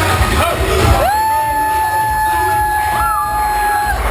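Loud bar music and crowd noise. About a second in, one voice lets out a long whoop that rises and then holds one high note for nearly three seconds.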